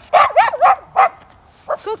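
A dog barking: four quick, high-pitched barks in the first second, followed by a woman's voice calling near the end.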